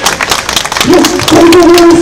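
Crowd applause, dense clapping, with a long held tone over it from about a second in.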